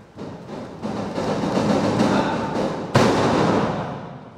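A wrestling ring taking a bump: one loud, boomy crash of a body landing on the canvas about three seconds in, which then dies away. Before it come a couple of seconds of lighter thuds and footfalls on the ring mat.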